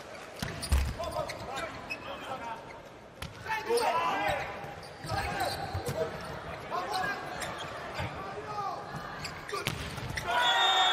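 A volleyball struck hard by a jump serve, a sharp thump under a second in, then several more ball hits through the rally, with players' shouts between them.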